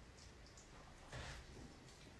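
Near silence: faint room tone, with one brief soft sound a little after a second in.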